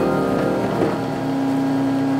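1924 Willis upright foot-pumped player piano at the end of its roll: the last notes fade, then a low tone comes in about a second in and holds steady.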